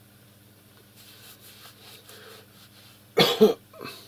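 A person coughing: two loud coughs in quick succession about three seconds in, then a softer third.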